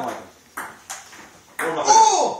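Ping-pong ball hits during a rally, two sharp clicks about a third of a second apart, followed near the end by a man's loud call.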